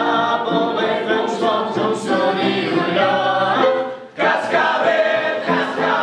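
A choir singing, with a brief drop in the sound about four seconds in, as between phrases.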